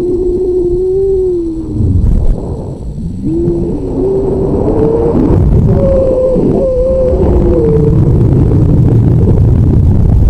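Wind rushing and buffeting over a rocket's onboard camera as it descends, with a wavering whistle from the airflow that glides up and down in pitch. The whistle drops out about two seconds in, then returns higher and fades near the end.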